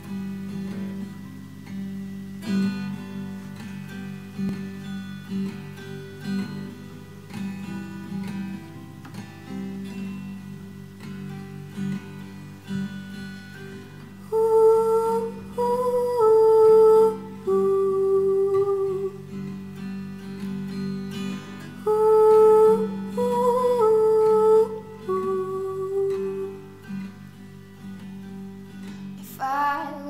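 Fingerpicked classical guitar playing a song intro. About halfway in, a woman's voice joins with a wordless melody in long held notes over the guitar. It drops out and returns a few seconds later, and comes in again near the end.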